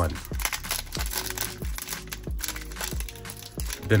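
Foil wrapper of a trading card pack crinkling and tearing as it is peeled open by hand, over steady background music with a beat.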